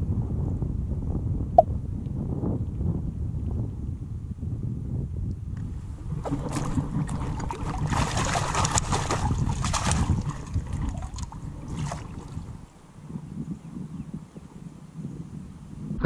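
Lake water sloshing as a long-handled perforated metal sand scoop is worked in shallow water, with a brighter, hissing splash from about six to ten seconds in as the scoop is sifted, then quieter water.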